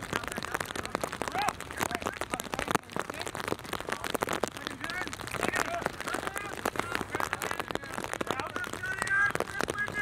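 Rain pattering on the plastic cover over the camera, a dense crackle of small taps, under shouts and calls from rugby players on the field, which grow louder near the end.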